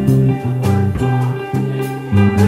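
Live instrumental trio music: an upright bass playing a moving line of low notes, electric guitar, and a drum kit with cymbal strokes.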